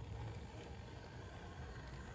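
Small electric RC crawler's motor and gearbox whining faintly as it creeps up a rock face, over a low rumble of wind on the microphone.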